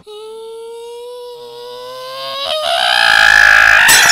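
A dramatic music swell: a held note that slowly rises in pitch, joined by lower notes and then swelling much louder in the last second and a half. It is cut off near the end by a sharp glass-shattering sound effect.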